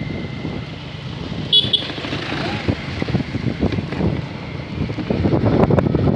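Moving vehicle with engine and road noise on a dirt road, and a short high-pitched sound about one and a half seconds in. Voices rise near the end.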